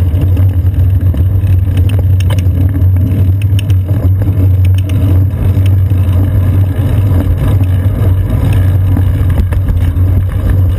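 Steady low rumble of wind buffeting and road vibration on a bicycle seat-post-mounted GoPro Hero 2 while riding in traffic, with a few light clicks and rattles in the middle.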